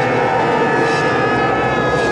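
A loud, steady engine drone with several held tones that drift slightly lower in pitch.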